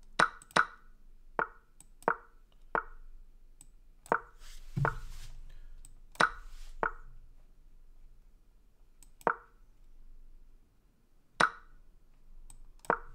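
Online chess board's move sounds: about eleven short, sharp taps at irregular intervals, some in quick pairs, as moves are played rapidly on both sides with little time left on the clocks.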